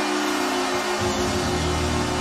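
Hockey arena goal horn sounding for a home goal over a cheering crowd: steady horn tones, with a deeper horn note joining about a second in.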